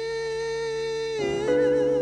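Music from a slow song: a long, wordless held vocal note over a steady low drone. Just over a second in, it falls away into lower, wavering notes.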